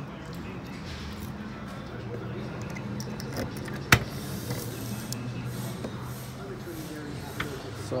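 The trunk lock and latch of a 1958 Chevrolet Impala released by hand with a single sharp click about four seconds in, over a low steady hum.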